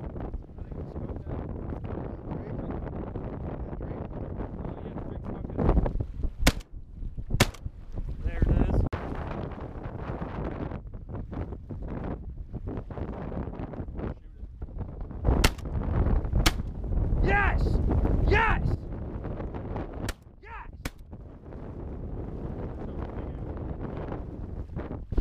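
Shotguns fired by sea duck hunters, six sharp shots in three pairs, each pair about a second apart or less.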